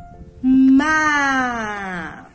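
A woman's voice drawing out one long vowel in a sing-song way, sounding out a syllable of the word "lama"; it starts about half a second in and slowly falls in pitch.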